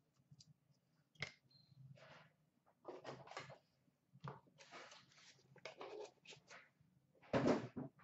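Scattered handling noises of cardboard trading card boxes and cards being moved about on a glass counter: light clicks, knocks and rustles, with a louder burst of handling near the end as a box is taken from the stack.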